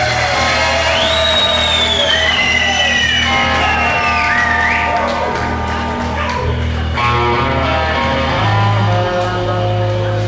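Live band playing a slow instrumental, an electric lead guitar holding long notes that glide and bend in pitch over a steady bass line, which steps to a higher note near the end.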